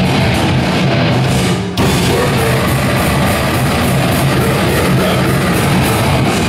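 Live metal band playing loud, with distorted electric guitars and a drum kit, broken by a split-second gap a little under two seconds in.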